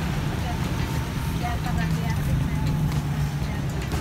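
Skewered chicken sempol deep-frying in a pot of hot oil, a steady sizzle over a constant low hum.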